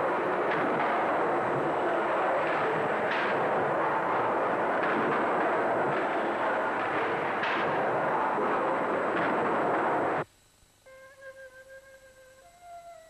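Steam beam engine machinery running: a loud, steady hiss of steam with irregular knocks. It cuts off abruptly about ten seconds in, and quiet flute music follows.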